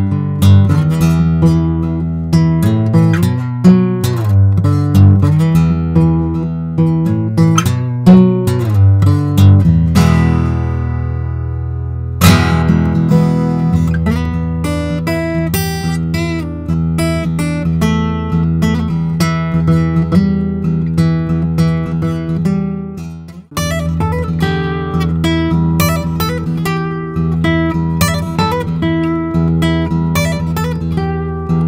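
Steel-string acoustic guitar played close to a condenser microphone: a run of picked notes, then a chord left ringing and fading out for about two seconds before the playing starts again. There is a brief break about three quarters of the way through, and then the playing carries on.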